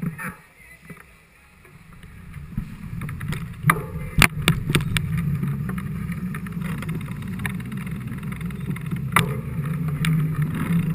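Wind rushing over a bike-mounted camera together with tyre and frame rumble, building up over the first few seconds as the mountain bike gathers speed and then holding steady. A handful of sharp clicks and rattles from the bike come around four seconds in, with one more near the end.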